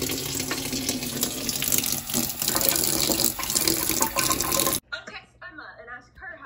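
Kitchen faucet running steadily into a stainless steel sink. The water sound stops abruptly near the end.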